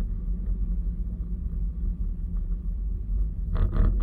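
Steady low rumble of a car driving, heard from inside the cabin, with a short burst of clattering knocks near the end.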